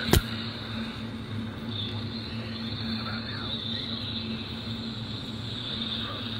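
Ebright pocket AM/FM radio's loudspeaker tuned to 580 AM on weak reception: steady static hiss and hum, with the distant station barely coming through. A single sharp click just after the start.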